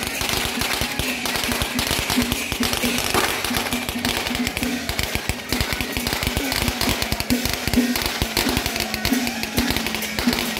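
A long string of firecrackers crackling in rapid, unbroken bursts, with procession music underneath.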